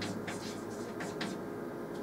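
Chalk writing on a blackboard: a series of short, scratchy strokes as letters are chalked onto the board.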